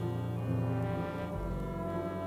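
Orchestral music played from a vinyl record: held chords over a sustained low note, with the bass dropping to a lower note a little past halfway.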